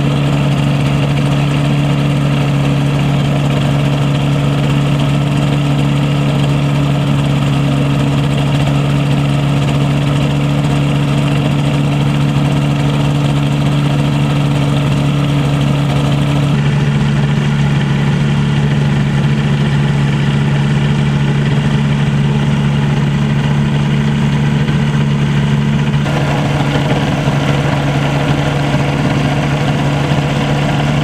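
Two-stroke Rotax engine of a Mini-Max 1100R ultralight idling steadily during a ground engine test.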